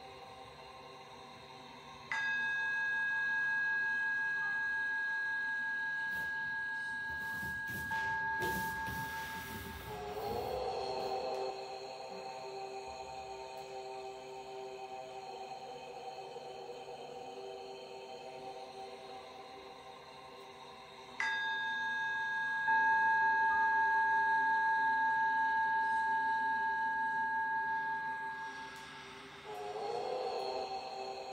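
Ambient meditation music with struck singing-bowl tones: one strikes about two seconds in and another about twenty-one seconds in, each ringing on for several seconds over a steady drone. Around eight to ten seconds in there is a brief rustling noise.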